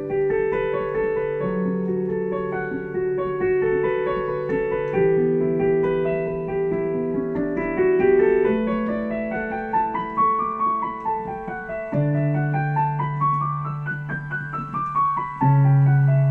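Piano sound played on a Nord Electro stage keyboard: a slow, calm improvisation in D major with sustained chords over a held low bass note. In the second half, right-hand runs climb up the keyboard and fall back twice, and a deep bass note is struck anew about twelve seconds in and again near the end.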